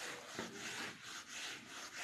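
A whiteboard duster rubbing across a whiteboard, erasing marker writing in repeated swishing strokes, about two a second.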